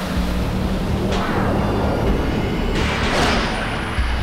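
Cartoon hover-car engine running with a steady low drone and a thin rising whine, swelling into whooshes about a second in and again near the end, over background score music.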